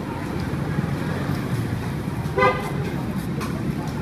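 Steady low rumble of street traffic, with one short vehicle horn toot about two and a half seconds in.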